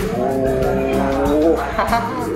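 A man's long wordless vocal exclamation, held for about a second and a half and rising in pitch near the end, over background music.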